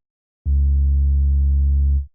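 Sub-bass synth note previewed in FL Studio's piano roll: one steady low note held for about a second and a half, starting about half a second in and cutting off at the end.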